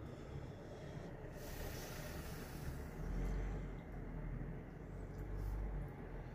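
A person sniffing a small bait held to the nose, a long inhale starting about a second in, over a low rumble.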